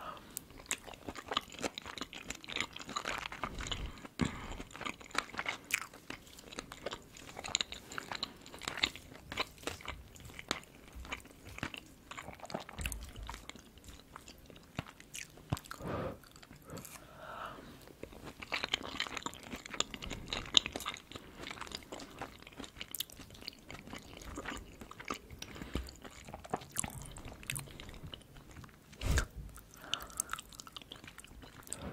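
Close-miked chewing of shrimp fried rice: irregular soft crunches and wet mouth clicks.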